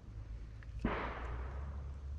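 A single distant gunshot about a second in, a sharp report trailing off in a short echo, over a low steady rumble of wind on the microphone.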